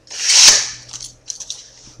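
A sword in its duct-taped bamboo sheath being handled and shifted, giving one brief swishing scrape that swells and fades within the first second, followed by a few faint clicks.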